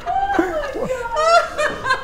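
Men laughing, mixed with a few short spoken sounds.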